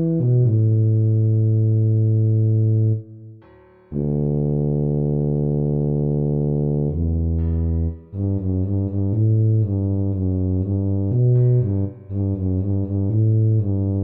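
A tuba part played back from the score: a single low melodic line of a few long held notes, then from about eight seconds in a quick run of short, repeated notes.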